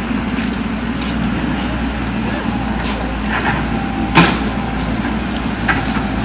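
Excavator diesel engine running steadily, with a sharp knock about four seconds in and a few lighter clicks.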